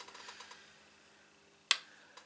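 A single sharp click near the end from handling a makeup brush and compact palette, with a few faint ticks before it.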